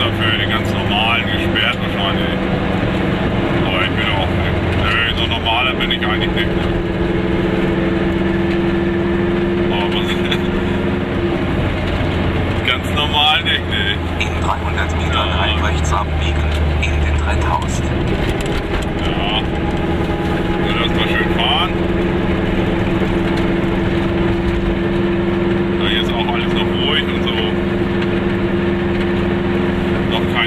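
Goggomobil's air-cooled two-stroke twin engine running steadily under way, heard from inside the small car. The engine note changes pitch a few seconds in and again a little past the middle.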